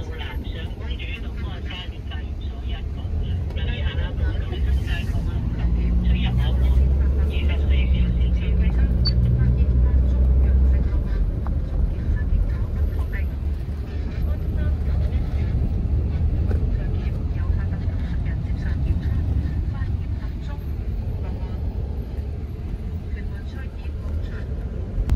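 Taxi cabin noise heard from the back seat while the car is under way: a steady low rumble of engine and road, swelling louder for a few seconds in the middle.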